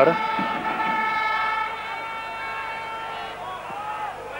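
Stadium crowd noise with a fan's horn sounding one long, steady note that fades out after about three and a half seconds.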